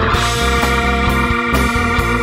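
Live rock band playing an instrumental passage: electric guitar lines over bass, drums and keyboard organ, with a steady beat.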